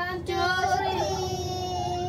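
A high-pitched voice holding one long, steady sung note, starting a moment in.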